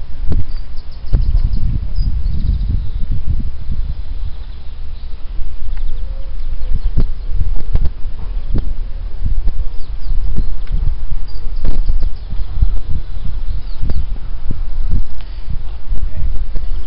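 Wind buffeting the camera microphone in uneven gusts, with faint bird chirps.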